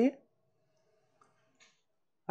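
The end of a spoken word, then near silence with a faint steady hum and two faint clicks, the taps of a stylus on a pen tablet while writing.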